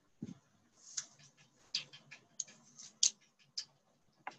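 Light clicks at uneven spacing, about a dozen in four seconds, with a soft low thump just after the start.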